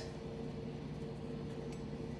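Quiet room tone: a steady low hum with no distinct event.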